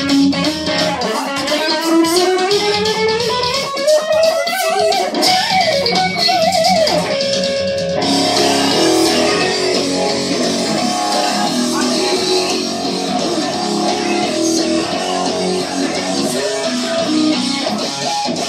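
Electric guitar played solo through an amplifier: a long rising glide in pitch over the first few seconds, then wavering vibrato, changing abruptly about eight seconds in to steadier picked notes and chords.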